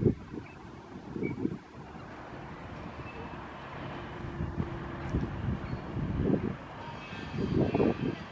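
Wind buffeting the microphone in irregular low rumbling gusts, strongest near the start and again near the end, over a faint steady engine hum from machinery or traffic in the background.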